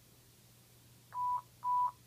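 Two short electronic beeps at the same pitch, about half a second apart, heard through a Whistler WS1080 scanner's speaker as its playback moves on to the next recorded radio transmission.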